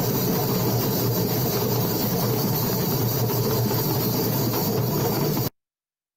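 Many hand drums played together in a dense, continuous group beat, cutting off suddenly about five and a half seconds in.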